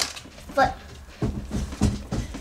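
Speech: a single short spoken "What?" followed by low, indistinct voices, with no clear sound of the card wrapper.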